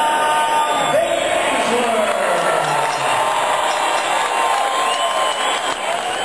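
Arena crowd noise: a dense, steady din of many voices talking and shouting, with scattered cheers and whoops.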